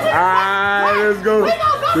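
A woman's voice through a handheld karaoke microphone, holding one long low sung note for about a second and a half, then breaking into the start of a shouted chant near the end.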